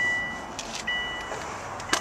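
Steady high-pitched electronic warning tone from the car, broken briefly about a second in, with a few faint clicks.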